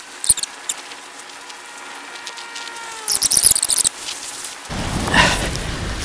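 Sped-up, high-pitched audio from a fast-forwarded stretch of hand-digging in sand: short squeaky chattering chirps, two quick ones near the start and a longer burst about three seconds in, with a few thin tones sliding downward just before it, over faint hiss.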